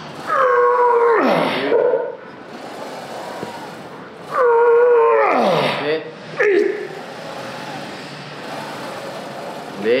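A man's strained groans as he pushes out two reps on a plate-loaded hack squat machine, about four seconds apart, each one long and dropping in pitch at the end.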